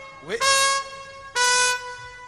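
Solo trumpet playing two short held notes. The first is reached by a quick upward smear about half a second in, and the second, slightly lower, sounds about a second and a half in.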